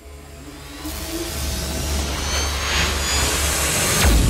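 Whoosh-riser sound effect for an animated logo intro: a rushing noise that swells steadily louder over a steady low rumble, with a faint rising whistle.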